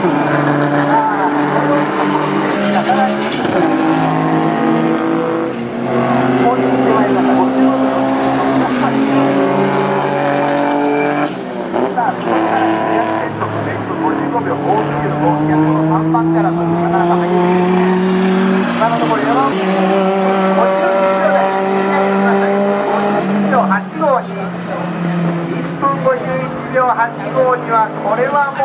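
Race car engines running hard at full throttle. The pitch climbs slowly as the revs build and drops suddenly at gear changes, about eleven and nineteen seconds in.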